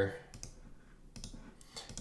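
A few faint, scattered clicks of a computer keyboard and mouse.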